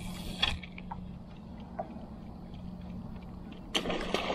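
A steady low hum under faint clicks and rustles from a spinning reel being worked while a topwater lure is fished, with a brief louder burst near the start and another near the end.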